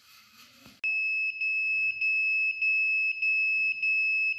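An electronic buzzer sounding one steady high-pitched tone. It starts suddenly about a second in and is broken by several short dropouts.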